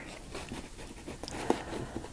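Neocolor II water-soluble wax pastel crayon rubbing across acrylic-painted craft paper: faint, irregular scratching strokes with a small tick about one and a half seconds in.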